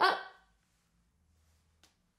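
A woman's short, surprised exclamation, "Oh!", lasting about half a second. A faint tick follows near the end.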